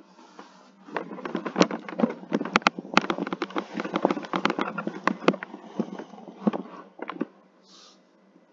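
Handling noise on a headset microphone: rustling with a rapid, uneven run of clicks and knocks that starts about a second in and stops after about seven seconds, as the headset and its cable are fumbled with.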